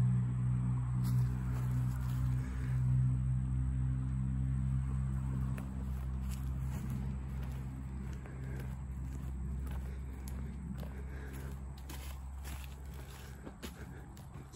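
A steady low mechanical hum that fades away over the first half. Footsteps crunch irregularly on dry leaf litter through the second half.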